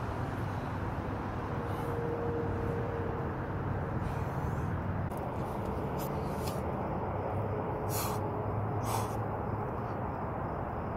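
Steady low outdoor background rumble, like distant traffic, with a few short hissing sounds in the second half.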